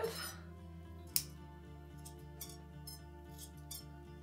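Sharp scissors snipping stray strands of a woven wall hanging's yarn fringe: several short, crisp snips, the first about a second in, over quiet background music.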